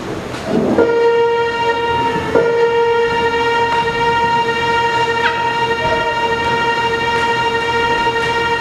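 A single steady pitched tone with overtones, held unchanging from about a second in to just past the end, with a couple of faint clicks over it.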